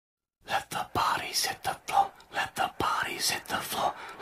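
A whispered voice with sharp clicks among it, starting about half a second in.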